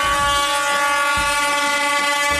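One long horn blast held on a steady pitch: the start signal for a mass-start amateur road cycling race.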